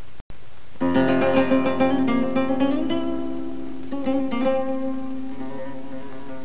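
Solo flamenco guitar: a quick run of plucked notes comes in about a second in and settles into ringing chords, with a second short flurry of notes around four seconds.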